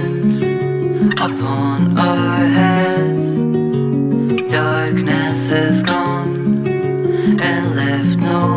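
Instrumental passage of an acoustic indie-folk song: acoustic guitar strumming chords, with no singing.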